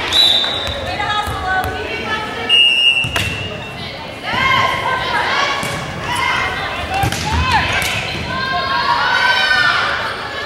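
A volleyball rally in a gym: girls' shouts and calls echoing around the hall, thuds of the ball being hit, and two short whistle blasts, one just after the start and one about two and a half seconds in.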